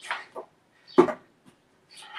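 A filled food can set down on the floor during a plank exercise: a sharp knock about a second in, with short breathy sounds of effort just before it.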